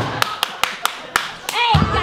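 A quick run of single hand claps, about seven in a second and a half, then a short vocal call, and near the end the band comes in with low double bass notes under singing.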